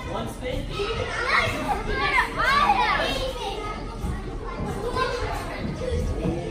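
Many children's voices chattering and shouting over one another, with a few high squeals that rise and fall about two to three seconds in.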